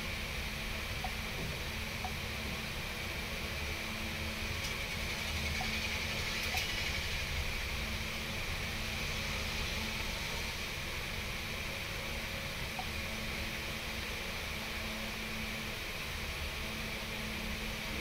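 Steady background hum and hiss with a few faint clicks.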